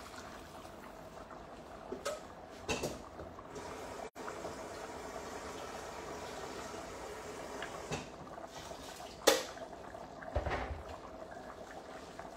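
Risotto simmering in a pot on the hob, a steady bubbling hiss. A few sharp knocks break in, the loudest about nine seconds in, followed by a brief low thud.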